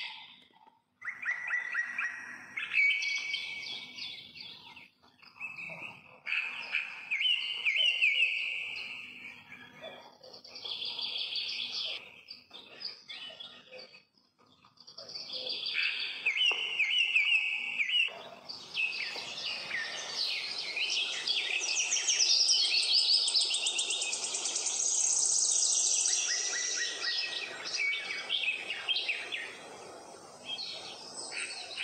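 Birds chirping and singing in repeated trilled phrases a second or two long with short pauses, becoming a denser, continuous chorus of chirps in the second half.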